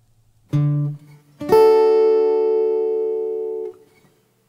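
A guitar plays a short low note about half a second in, then a strummed major chord about a second later that rings and slowly fades for about two seconds before stopping.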